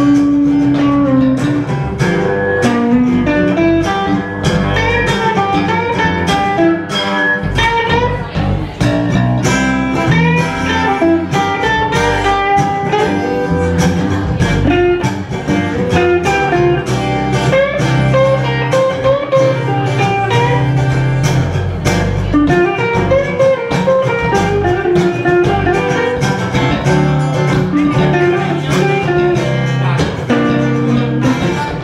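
Live blues played by a small band of acoustic guitar, electric guitar, electric bass and saxophone, with a melody line over steady strummed chords and a walking bass.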